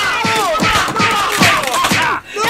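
Loud overlapping voices shouting over music with a thudding beat.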